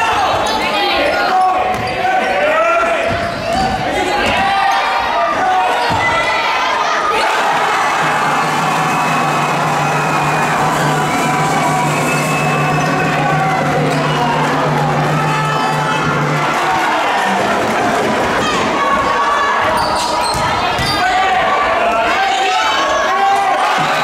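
Indoor basketball game sound: many voices of spectators and players overlapping, with a ball bouncing on the wooden court. A low, steady tone holds for about eight seconds in the middle.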